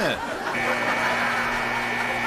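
Ice hockey arena's horn sounding one long, steady blast starting about half a second in, signalling the end of a period.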